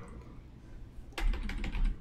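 Computer keyboard, the Enter key tapped about five times in quick succession about a second in, each tap a short click.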